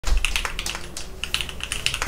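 Rapid typing on a tenkeyless mechanical keyboard: a quick, even run of key clicks, about eight keystrokes a second.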